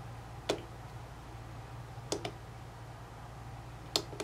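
Sharp clicks from the front-panel controls of a handheld DSO Shell digital oscilloscope as they are operated: one about half a second in, a quick pair around two seconds, and another near the end, over a low steady hum.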